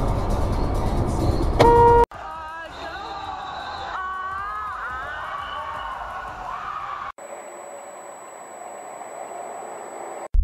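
Sound collage of short found-audio clips spliced with hard cuts. It opens on a loud, deep noisy stretch with a brief horn-like toot, then a few seconds of gliding, wavering pitched sounds, then a quieter stretch over a thin, high, steady whine.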